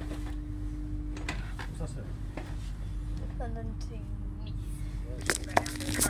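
Steady low rumble and hum inside a train carriage, the hum dropping out for a couple of seconds early on, with faint background voices. A sharp knock comes near the end.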